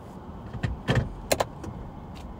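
A handful of sharp clicks and knocks from handling a car, the loudest about a second in and again a moment later, over a low steady rumble.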